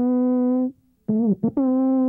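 The world's largest alphorn, about 55 yards long, heard at its bell: a long held low note that stops just after the first half-second, a brief gap, a few quick notes, then the same low note held steady again.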